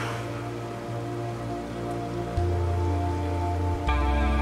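Soft background music of sustained chords over a low bass note that shifts about two and a half seconds in.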